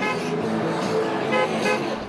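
Car horns honking in short toots over a steady din of road traffic and a crowd of picketers.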